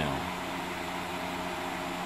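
Steady mechanical hum with an even hiss behind it, holding level throughout.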